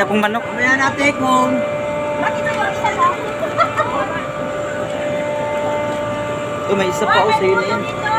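Steady hum of running industrial machinery, holding several constant tones, with voices talking over it at the start and again near the end.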